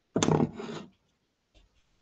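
A brief rubbing scrape, under a second long, of fondant icing being tucked under the cake's bottom edge by hand against a foil-covered cake board.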